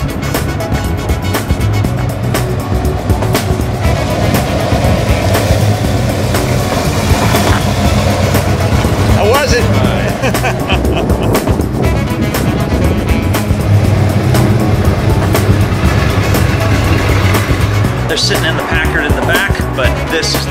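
Classic convertible car's engine running steadily as it drives along, with indistinct passengers' voices and music mixed over it.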